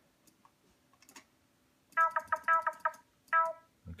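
Calf Monosynth software synthesizer in Ardour playing one short note about six times in quick succession, then once more after a brief gap, preceded by a couple of faint mouse clicks. The notes show that the MIDI track is sounding: it is working.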